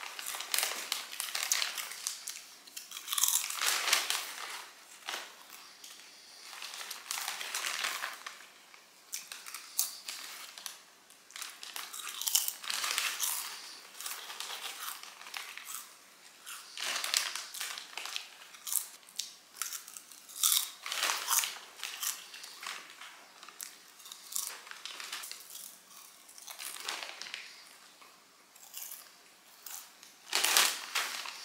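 Close, crunchy chewing of a crisp snack, with a plastic snack bag crinkling now and then.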